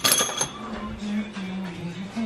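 Aluminium pie cuts for intercooler piping clinking against each other at the start, with a brief metallic ring, followed by a faint steady low hum.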